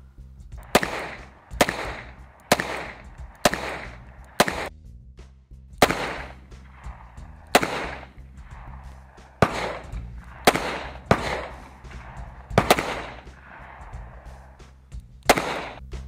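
Snub-nosed revolvers firing aimed shots in quick succession: about a dozen sharp reports, roughly one a second, each with a short echo.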